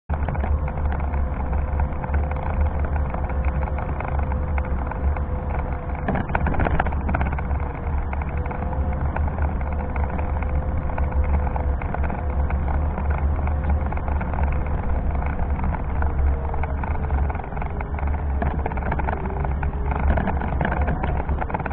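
Meyra Optimus 2 electric wheelchair driving along, its drive motors giving a steady whine under a heavy low rumble. The whine's pitch dips slightly near the end.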